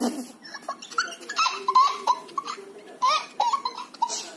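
A young girl laughing in short bursts of giggles.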